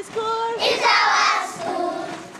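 A group of young children singing together in held, sustained notes, cut across the middle by a loud, shrill burst of voices.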